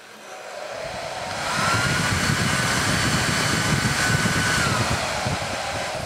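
Handheld hair dryer blowing into a cardboard box: a rush of air that builds over the first second or two, then holds steady with a thin motor whine. Near the end the whine drops and the airflow eases off.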